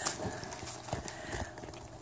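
Soft, muffled laughter and mouth noises from children with marshmallows stuffed in their mouths, trailing off about three-quarters of the way through, with a few small clicks.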